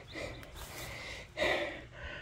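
Breathing close to the microphone: two soft breaths, the second, about one and a half seconds in, a little louder.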